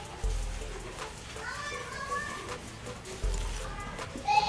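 Children's voices in the background, with two low rumbles: one about a quarter second in and one near the end.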